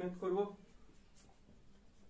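Faint strokes of a felt-tip marker writing on a whiteboard, after a brief word of speech.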